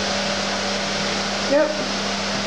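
Bathroom extractor fan running: a loud, steady rushing noise with a low steady hum under it.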